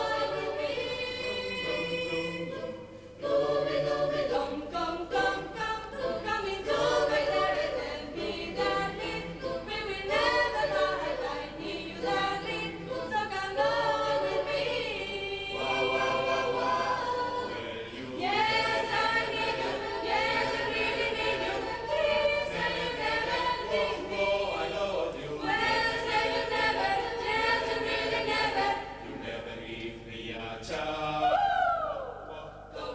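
A youth choir, mostly girls' voices, singing together in harmony. The singing goes in phrases with brief breaks, one about three seconds in and another near eighteen seconds.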